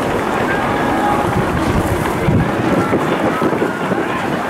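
Wind buffeting the camera microphone in gusts, strongest between about one and two and a half seconds in, over the chatter of a stadium crowd.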